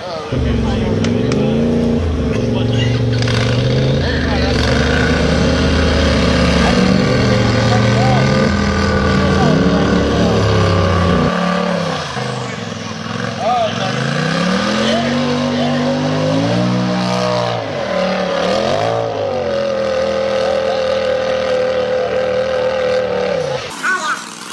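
Rock bouncer buggy engine revving hard as it climbs a steep dirt hill, the pitch surging up and dropping back again and again. It changes abruptly about eleven seconds in. Near the end it is held at high revs for several seconds, then cuts off suddenly.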